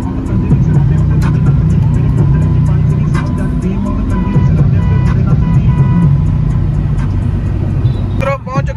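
Steady low road-and-engine rumble inside a moving car's cabin, under music with a light regular beat.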